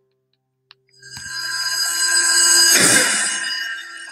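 Closing logo sting of a music video: a sustained, bright chord of many ringing tones that swells in about a second in and peaks with a noisy crash near three seconds before fading.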